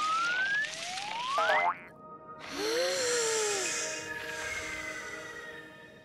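Cartoon sound effects over light background music: rising whistle-like glides in the first second and a half, then, after a brief dip, a boing-like tone that rises and falls near the middle.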